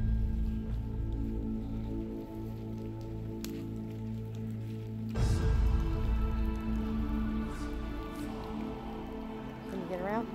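Background music of held, droning chords that change to a new chord about five seconds in, over a low rumble.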